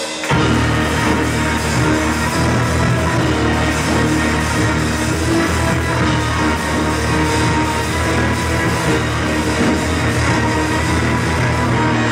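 Live band playing loud, with electric guitar and keyboard in a dense full-band wall of sound. The whole band comes back in together about a third of a second in, after a brief break.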